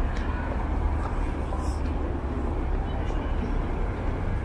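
City street traffic: cars passing on the road make a steady low rumble, with voices of passers-by mixed in.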